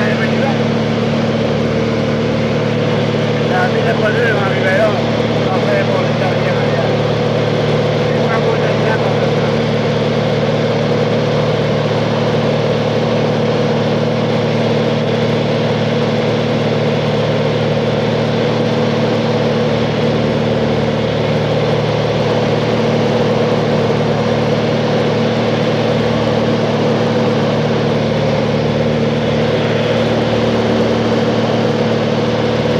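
Steady drone of a small propeller plane's engine heard from inside the cabin in flight, an even hum with several held tones.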